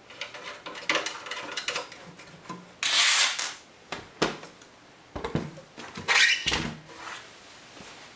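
Rear panel of a Synology DS413j NAS enclosure being handled and pushed into place by hand: a series of scrapes and rubbing with clicks and knocks. The loudest is a half-second scrape about three seconds in.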